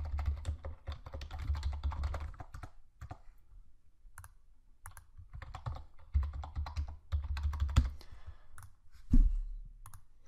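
Typing on a computer keyboard: a quick run of keystrokes, a stretch of scattered taps, then another run. A single louder thump comes about nine seconds in.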